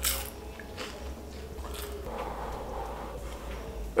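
A person chewing a mouthful of a hot, crispy baked vegetable pouch (a pastry-wrapped spring roll), with a short crunch right at the start. From about two seconds in there is a soft airy huffing as she breathes through the open mouth around the too-hot filling.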